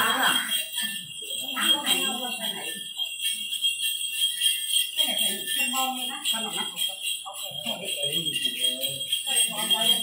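A cluster of small jingle bells, the xóc nhạc of a Then ritual, shaken continuously, with voices heard over it.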